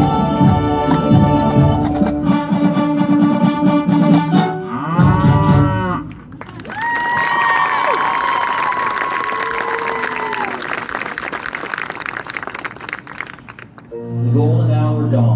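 Marching band brass and percussion playing a loud passage that stops about six seconds in. The rest is a steady noisy crowd sound with a few long, bending calls, heard as audience applause and cheering.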